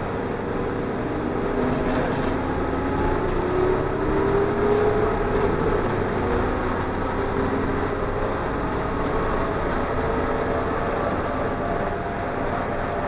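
A city transit bus heard from inside, its engine and drivetrain pulling the bus up to speed. A whine climbs in pitch over the first five seconds or so, then settles into a steady running noise.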